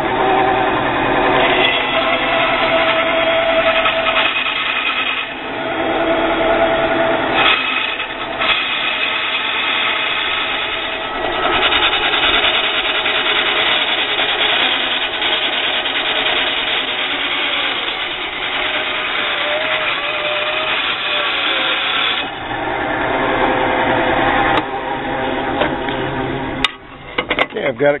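Small benchtop bandsaw running and cutting through a thick, stitched leather sheath blank. The tone shifts a little as the leather is fed and turned. The saw stops about 26 seconds in.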